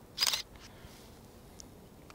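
Canon DSLR firing a single shot about a quarter of a second in: one short mirror-and-shutter clack of an exposure at 1/100 s, followed by faint ticks.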